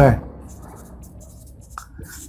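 Marker pen writing a word on a whiteboard: faint, intermittent scratching strokes.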